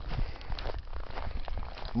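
Footsteps in snow: a few uneven steps as the walker closes in on a grave marker.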